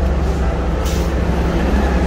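City bus idling at the curb with its doors open: a steady low engine rumble, with a brief hiss about a second in.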